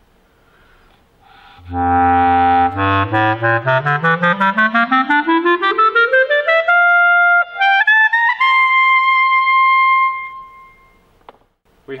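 Basset horn in F played solo: it holds its lowest note, the low written C, then climbs in a quick rising scale through nearly four octaves to a long held high note that fades away, showing off the instrument's full range.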